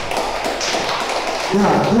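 Mostly speech: a man talking into a handheld microphone, amplified through a PA speaker in a large hall. A short 'yeah' comes near the end, after a stretch of noisy room sound.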